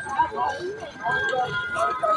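Street chatter: people talking close by while walking along a paved road, with the scuff of sandals and flip-flops on the pavement.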